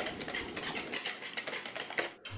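Wire whisk beating eggs in a plastic bowl: a quick run of light ticks as the tines strike the bowl through the liquid.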